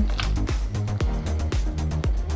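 Background music with a steady beat, about two beats a second, over sustained low bass notes.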